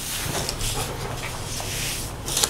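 Pens writing and papers rustling as documents are signed at a table, over a steady low room hum.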